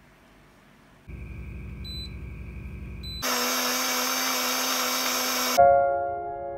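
A small electric motor running: first a quieter hum with two short beeps, then about three seconds in a louder, harsher whirring with a steady whine for about two seconds. It cuts off when a piano note comes in near the end.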